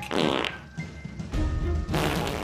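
A comic fart sound effect, one short burst about half a second long, over background music, with a low rumble near the end. It marks a present holding something toxic.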